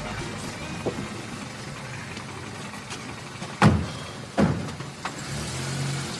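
A car running, then two car doors slamming shut less than a second apart.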